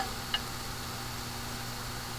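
Steady low hum and hiss of room tone, with one faint click about a third of a second in.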